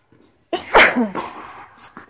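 A person close to the microphone sneezing once, loudly, about half a second in, the burst trailing off into a voiced tail.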